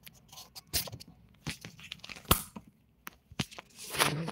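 Handling noise from a phone being moved and set in place: an irregular run of knocks, scrapes and rustles against the microphone, with the sharpest knock a little over two seconds in.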